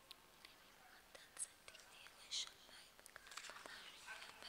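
Faint whispered prayer: soft hissing s-sounds and small mouth clicks close to a microphone, with no voiced words.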